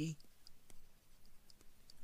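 A few faint, scattered clicks and taps of a stylus on a pen tablet while handwriting is written.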